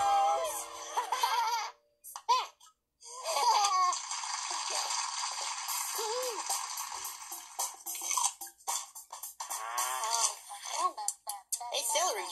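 Cartoon children's voices laughing and giggling over background music as a sung line ends, with a short silent break about two seconds in.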